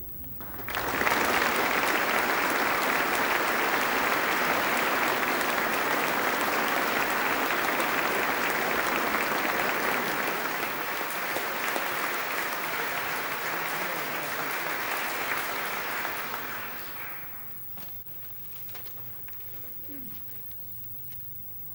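Audience applauding in a large hall at the close of an address. The clapping starts about a second in, holds steady, and dies away about three seconds before the end.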